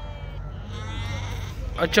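Fat-tailed sheep bleating: a short bleat, then a longer wavering one.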